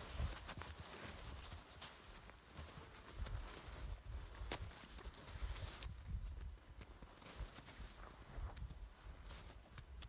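Gusty wind rumbling on the microphone, with scattered faint clicks and crunches throughout.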